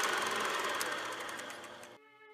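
Film projector sound effect: a rapid mechanical ticking rattle over a hiss, fading out over about two seconds.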